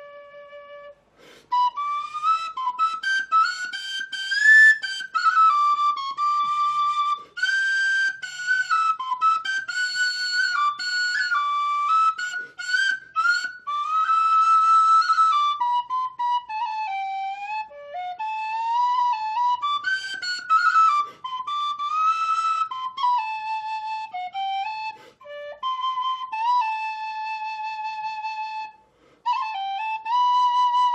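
Solo tin whistle playing a slow air, a lament: a single melody line moving in unhurried phrases, with a breath pause about a second in and another just before the end.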